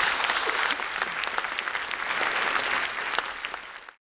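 Large audience in an auditorium applauding, a dense patter of many hands clapping that dies down near the end.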